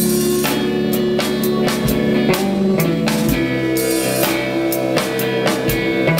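Rock band playing an instrumental passage: guitar over a drum kit, with regular drum and cymbal hits.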